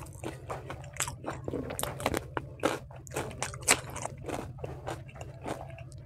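A person chewing a mouthful of food with the mouth closed, close to the microphone: irregular wet clicks and crunches, one sharper crunch a little after the middle, over a steady low hum.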